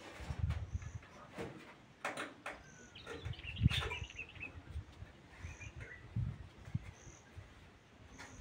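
Short, high bird chirps repeating about once a second, over scattered knocks and rustles from a cloth curtain being handled in a doorway, with one louder knock near the middle.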